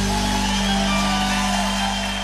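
Live gospel band music holding a sustained chord, with steady bass and keyboard-like tones, easing slightly toward the end.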